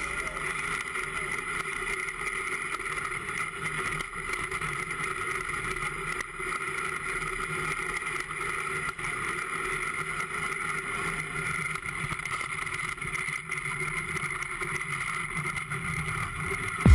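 Iceboat under way: a steady, unchanging rumble and hiss from its steel runners on the ice.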